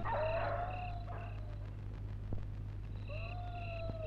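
Night-time ambience on a film soundtrack: short high chirps repeating in regular pulses over a low steady hum. Twice an animal gives a long drawn-out call that rises briefly and then slowly falls.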